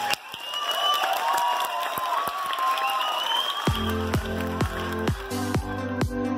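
Audience clapping and cheering. About two-thirds of the way through, an electronic dance track with a steady kick drum about twice a second comes in over it.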